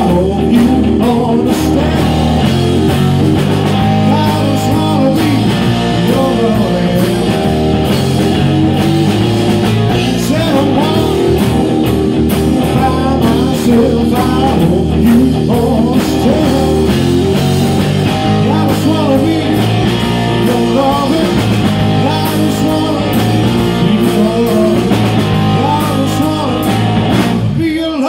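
A live electric blues band playing: lead electric guitar with bent notes over bass guitar and a drum kit.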